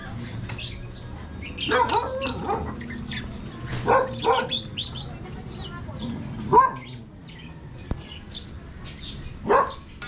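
A dog barking in short, separate bouts, about five times, over a low steady background hum of street ambience.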